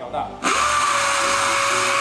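Air-powered 6-inch random orbital sander (3M Elite central-vacuum type) starting about half a second in and running against a painted steel fuel tank. It gives a loud, steady hiss of exhaust air with a constant whine, and stops at the end.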